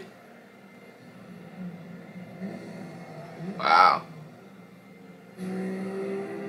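Faint movie-trailer soundtrack: a low steady hum, a short loud voice-like sound a little past the middle, and from near the end a steady low car-engine drone as the cars race.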